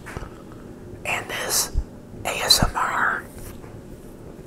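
A man whispering two short breathy phrases close to the microphone, the first about a second in and the second about two seconds in, with a soft low knock between them.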